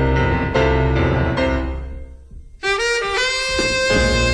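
Live jazz quartet: piano chords over double bass ring out and die away about halfway through. Then a saxophone comes in and holds long notes.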